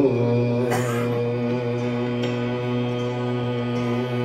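Hindustani classical vocal: a male singer holds one long, steady note, with a single tabla stroke about a second in.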